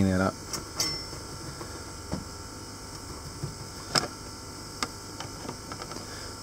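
A few light clicks and taps of tools and desoldering braid being handled on an electronics bench, over a steady faint hum; the sharpest click comes about four seconds in.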